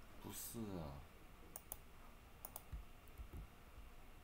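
A short wordless vocal sound falling in pitch near the start, then two pairs of sharp computer keyboard key clicks as keys are pressed.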